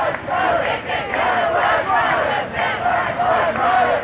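A crowd of protest marchers shouting a chant together, many voices at once with a pulsing, repeated rhythm.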